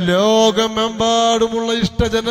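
A man's voice chanting in long, drawn-out melodic phrases on a steady reciting pitch, in the manner of devotional Arabic recitation.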